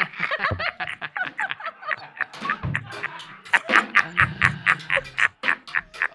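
Men laughing hard in quick repeated bursts, several voices overlapping.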